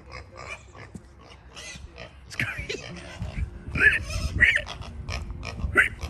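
Pigs grunting and squealing: a string of short calls, about two a second, starting about two seconds in.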